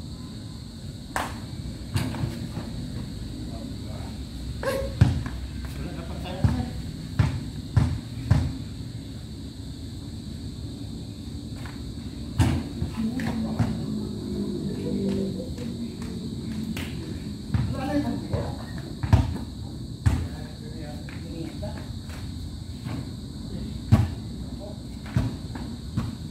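Basketball thudding at irregular intervals, about a dozen separate sharp impacts, with men's voices talking in between.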